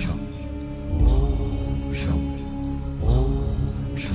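Devotional background music: a sustained drone with deep bass hits about every two seconds, each wrapped in sweeping pitch glides, and sharp high strokes in between.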